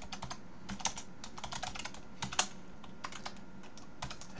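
Computer keyboard typing: an irregular run of quick key clicks, thinning out in the last second or so.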